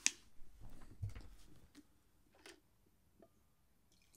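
A plastic shaker bottle's spout cap snapping open with one sharp click, followed by a few faint clicks and light handling rustles.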